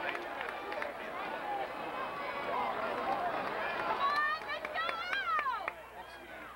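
Spectators in the stands chattering and shouting, with several high-pitched yells rising and falling in pitch over the last two seconds.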